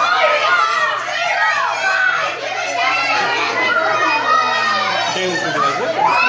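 Many children talking and exclaiming over each other at once, a continuous high-pitched babble of young voices.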